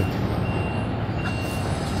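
Steady low rumble of a vehicle engine, with a thin high-pitched beep sounding twice in half-second stretches.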